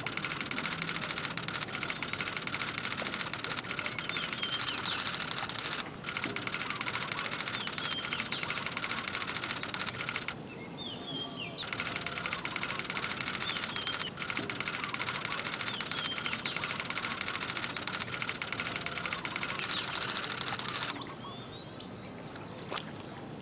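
Typewriter keystroke sound effect, a fast steady run of clicks that pauses briefly about six seconds in, stops for over a second around ten seconds in, and ends about a second before the close. Birds chirp faintly in the background.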